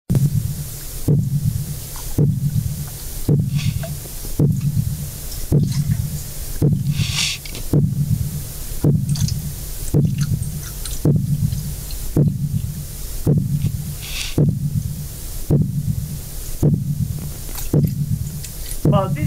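Pile driving: a pile-driving hammer strikes at a steady pace a little more than once a second, each strike a low boom, over a steady low drone. It is the intermittent, repeated "boom boom boom" pattern of impulsive construction noise.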